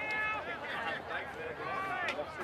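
Several voices shouting and calling over one another during play, from players and sideline spectators.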